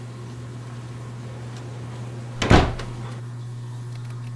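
A door banging shut once, about two and a half seconds in, over a steady low electrical hum.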